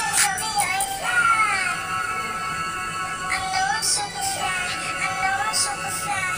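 High-pitched, chipmunk-style singing over a pop backing track, the melody sliding and bending throughout.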